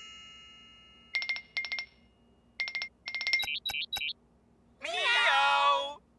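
Cartoon tablet sound effects: a chime dying away, then several short clusters of electronic beeps and high blips as the screen is tapped to start a video call, followed near the end by one meow lasting about a second.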